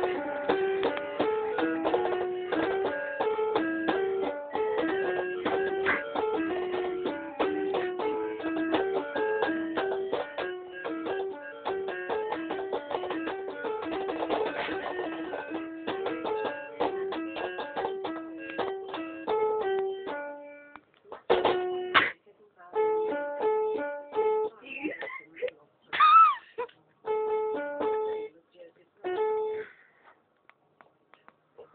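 Electronic children's musical learning toy playing a plinking melody of short, bright notes. About two-thirds of the way through, the tune breaks off into short snatches of notes and sounds with gaps between them, with a loud sliding squeal near the end.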